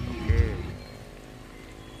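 Music playing over loudspeakers, dropping to a faint, quieter level about a second in.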